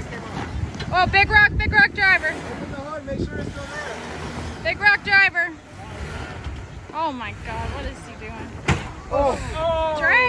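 Low, steady rumble of a Toyota 80-series Land Cruiser crawling on a rock trail, with wind on the microphone. Short bursts of raised voices, too unclear to be transcribed, and a single sharp knock near the end.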